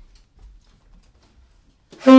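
Faint, scattered clicks and soft taps from a tenor saxophone's keys and from handling the horn as the player readies to play.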